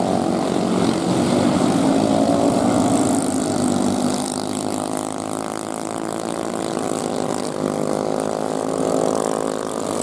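Junior sprint race cars' small engines running on a dirt oval, the engine note rising and falling as the cars pass, loudest in the first few seconds.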